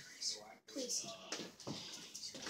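Faint, distant voices in a quiet room during a lull between nearby speech, with a brief dropout about half a second in.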